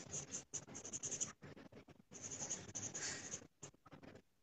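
Charcoal pencil scratching on Bristol paper in two runs of quick shading strokes, with a short pause between them.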